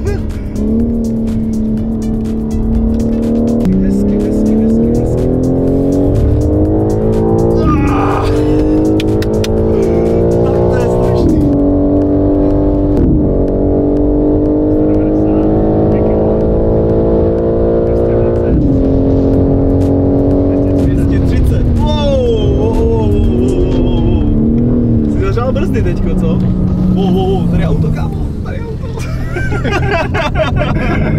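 Heard from inside the cabin, a BMW M car's twin-turbo straight-six is pulling hard at full throttle on a race track. Its note climbs through the gears with sharp drops at the upshifts, holds a high steady note at about 200 km/h, then winds down near the end as the car slows.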